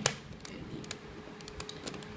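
Plastic 3x3 Rubik's cube being twisted by hand: one sharp click at the start, then a string of light clicks and rattles as its layers are turned.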